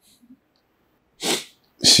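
A man's single short, sharp sniff through the nose a little over a second in, a sniffle during an emotional pause, then the start of his next word.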